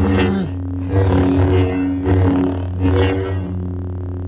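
Lightsaber sound font 'Lost Tribe' playing from a replica hilt's SmoothSwing soundboard: a low droning hum that swells into a swing swoosh about four times as the blade is swung, then settles back to the steady hum near the end.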